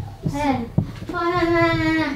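A woman's voice: a few quick syllables, then one long, drawn-out cry held at a steady pitch for nearly a second.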